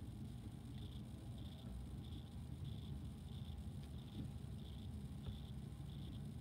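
Pen writing on paper: faint short scratchy strokes repeating in quick spurts, over a low steady room hum.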